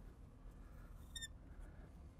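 Faint room hum, with one short high squeak of a marker on a glass lightboard about a second in as a line is drawn.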